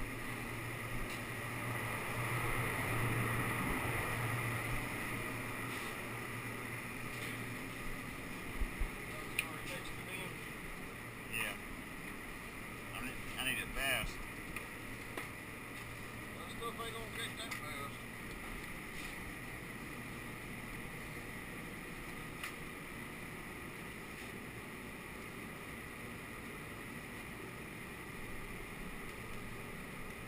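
Steady low hum and rush of shop machinery running, a little louder for the first few seconds, with scattered clicks and knocks in the middle.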